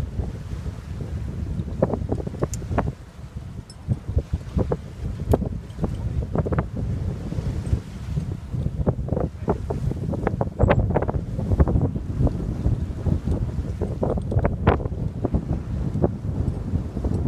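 Wind buffeting the microphone on a sailing yacht's deck: a steady low rumble, with many short sharp rustles and slaps of sailcloth being handled, coming thicker in the second half.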